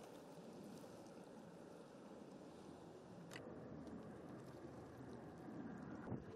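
Faint, steady low rumble of outdoor harbour noise, with one brief click a little past the middle.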